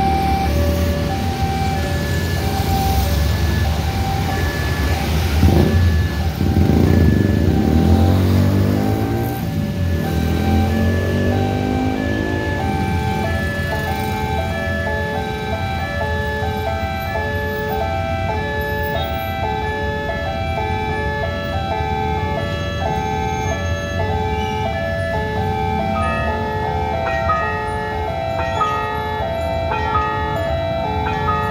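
Electronic level-crossing warning bell sounding in a steady repeating pattern of chime tones. Motorbikes and other traffic run past over the first half. From about 13 s in the chimes become a denser, multi-pitched repeating tune as the traffic goes quiet behind the lowered barriers.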